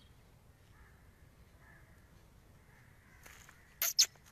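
A black francolin calling: after a quiet stretch, one softer note and then two short, loud notes in quick succession near the end, the opening of its call.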